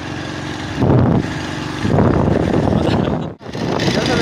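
A vehicle engine running while moving along a road, with wind buffeting the microphone; it grows louder about a second in and again from about two seconds, and cuts out briefly near the end.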